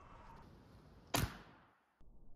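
AEA Element Max .50-caliber big-bore PCP airgun firing once about a second in: a single sharp report that dies away quickly.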